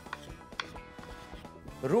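Kitchen knife chopping on a wooden cutting board: a few separate knife strokes, over soft background music.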